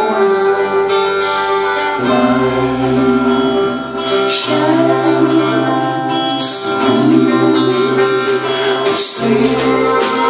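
Live band music: a strummed acoustic guitar over bass and a drum kit, with light cymbal hits. A low bass line comes in about two seconds in.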